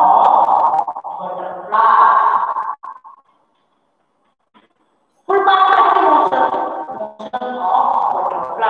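A woman's voice in drawn-out, sing-song phrases with held vowels, broken by a pause of about two seconds in the middle.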